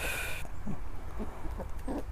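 Chickens clucking softly while pecking at food: a few short, low clucks spaced through the moment, opening with a brief higher-pitched call.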